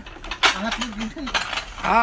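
Ceramic plates and bowls clinking and clattering against each other as they are handled and lifted out of a box of dishware, a run of short clicks.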